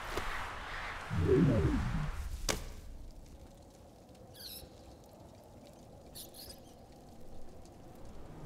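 A brief pained vocal sound from a person, the loudest thing here, followed by a sharp click; then, in a quiet stretch, faint high bird chirps twice.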